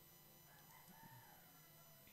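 Near silence: a faint steady low hum, with a faint drawn-out call that rises and falls in the background from about half a second in.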